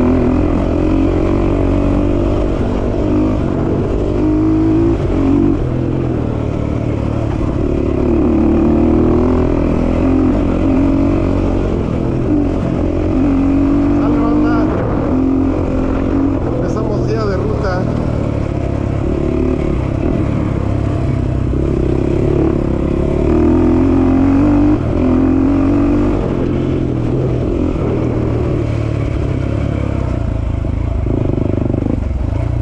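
Dirt bike engine on a trail ride, its pitch climbing and dropping again every couple of seconds as the throttle opens and closes through the gears.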